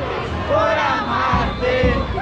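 A crowd of many voices shouting and singing together. Low thumping beats join in about a second and a half in.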